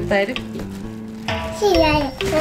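Background music with steady sustained notes, over which a young child vocalises: a short call just after the start, then a longer sliding sound falling in pitch near the end.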